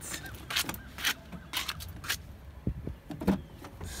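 A car door being unlocked and opened: a series of sharp clicks and knocks from the latch, handle and door.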